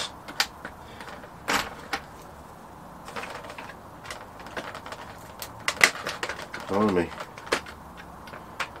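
Scattered small, sharp clicks and taps of pliers working at a control-horn clevis on a model plane's rudder, trying to spring it open. The loudest click comes about one and a half seconds in, and a quick cluster comes near six seconds.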